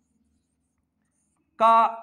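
Very faint scratching of a marker writing on a whiteboard, then a man's voice starts speaking near the end.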